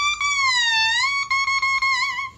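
An oboe double reed blown on its own, off the instrument: a high, reedy tone that bends down in pitch and back up, then breaks into several short repeated notes on one pitch in the last second.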